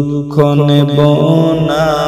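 Islamic gojol (devotional song) sung by a voice repeating the refrain, held notes gliding over a steady low drone.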